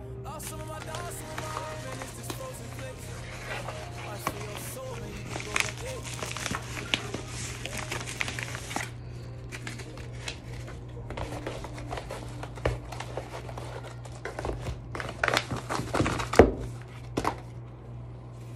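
A yellow padded mailer crinkling and rustling as it is handled and opened, with scattered light knocks throughout. Music plays underneath.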